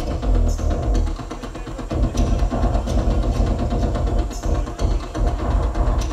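Live electronic music from a performer's electronic rig: a loud, dense rhythmic texture over deep bass, with a short high hiss recurring about every two seconds.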